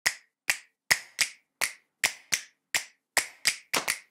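Sharp, snap-like percussive clicks in a loose rhythm, about two or three a second, coming faster near the end. This is the percussion of a talk's opening title sequence.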